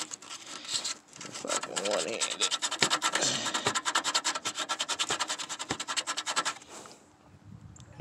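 Rust being scrubbed by hand off the car body's sheet metal around the battery ground bolt hole, cleaning it to bare metal for a new ground cable. It is a rapid run of even back-and-forth scraping strokes, about eight a second, that stops about seven seconds in.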